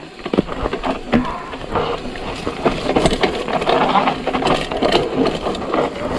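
Mountain bike rattling down a rough dirt trail: tyres running over dirt and the bike clattering with many quick clicks and knocks.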